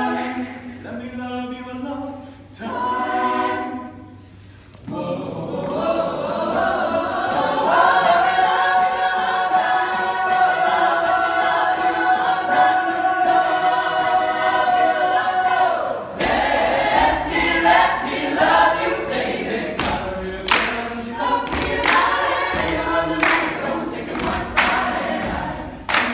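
Mixed-voice student a cappella group singing. After a brief quieter dip about four seconds in, the voices swell into a long held chord for several seconds; then sharp rhythmic percussive hits come in under the singing.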